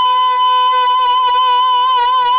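Ravanhatta, a bowed Rajasthani folk fiddle, sounding one long steady note.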